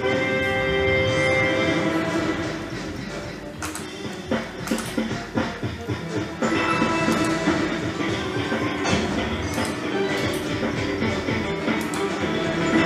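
A fruit slot machine playing its electronic game music through a free-spin round. Sharp clicks mark the reels landing, about every second or two.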